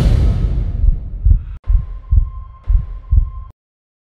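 Closing logo sound effect for a radio station: a loud swell dies away at the start, then deep heartbeat-like pulses come about twice a second. A steady high tone joins halfway, and everything cuts off suddenly about three and a half seconds in.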